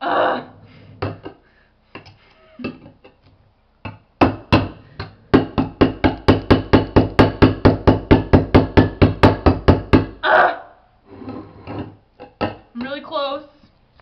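Scissor points stabbed again and again into the lid of a metal food can, a fast, even run of sharp strikes about five a second for some six seconds, to punch holes in it without a can opener. A few scattered knocks come before the run.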